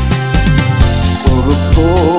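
Karaoke song with a steady beat and heavy bass. A sung melody line with vibrato comes in about halfway through.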